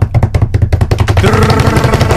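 Rapid drum roll announcing a winner, with steady pitched tones joining in about a second in.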